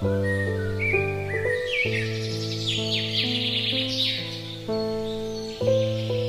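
Slow, romantic solo piano music, with sustained notes struck one after another. Birdsong chirps are laid over it from shortly after the start until past the middle.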